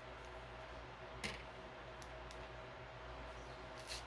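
Faint hand handling of a thick cotton-twine crocheted cord and a wooden bead: one soft click about a second in and a few fainter ticks over a low steady hum of room tone.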